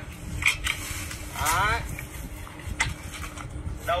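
Pole pruner being worked by its pull cord against a fresh branch: a few sharp clicks and snaps, with a brief voice between them.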